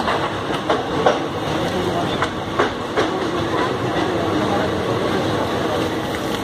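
Running noise of a passenger train coach heard from its open door: a steady rumble of wheels on the rails, with a few sharp clicks from rail joints in the first three seconds.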